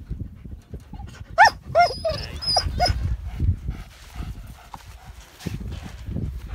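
Alaskan Malamute giving a quick run of about five short, high whines about a second and a half in.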